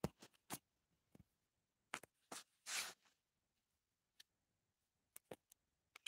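Near silence, broken by a few faint scattered clicks and one short burst of hiss near the middle.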